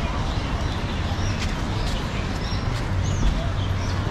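Busy street ambience: steady traffic and crowd noise, with a few short bird chirps and light clicks in the middle.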